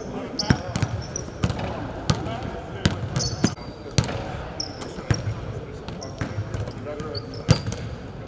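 Several basketballs bouncing irregularly on a hardwood court, with short high sneaker squeaks in between, echoing in a large empty arena.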